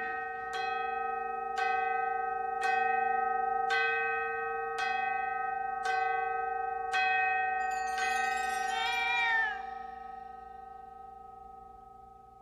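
Striking bell of an ornate gilded clock, ringing out stroke after stroke about once a second, each stroke's tone ringing on under the next. After the last strokes a warbling, rising chime sweeps in, and the ringing fades away slowly.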